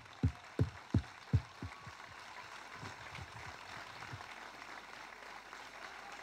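Crowd applauding steadily. Over the first two seconds there are close, thudding hand claps about three a second from someone clapping with a handheld microphone in hand; they fade out.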